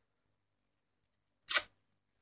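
Near silence, then about one and a half seconds in a single short, hissy breath from a woman.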